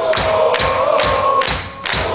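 Heavy metal band playing live: drum hits on a steady beat, about two and a half a second, under held guitar and vocal notes. The music briefly drops away near the end before the hits come back.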